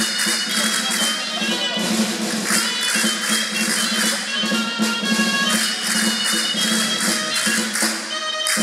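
Live folk music for a Castilian jota: pitched melody over a steady low note, with jingling percussion keeping a driving beat.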